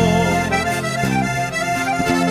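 Norteño music: a button accordion plays an instrumental passage over a steady bass and rhythm accompaniment, with no singing.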